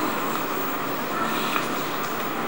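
Steady, even background noise like hiss or room rumble, with no speech over it.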